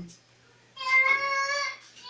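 A child's voice singing one high, held note for about a second, starting after a short pause.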